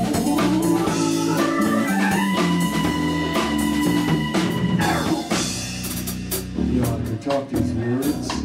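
Live band playing an instrumental passage on drums, electric guitar, electric bass and Hammond SK1 keyboard, with a high note held for about three seconds from about two seconds in.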